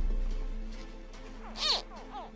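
A baby crocodile in its nest gives one short, high, chirping call that rises and falls, about a second and a half in. This is the call hatchlings make to draw the mother to dig them out.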